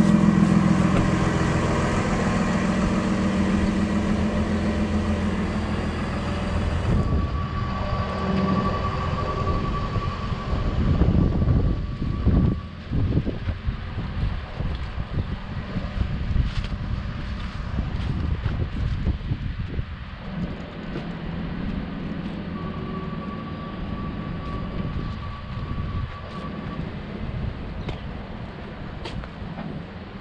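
A truck engine running close by, loudest at first and fading over the first several seconds as the truck is left behind. After that comes a steady outdoor rumble with irregular low gusts, and a faint held tone appears twice.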